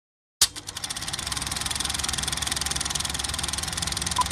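Sound effect of a film projector running: a rapid, even mechanical clatter that starts abruptly just under half a second in, out of silence, and holds steady.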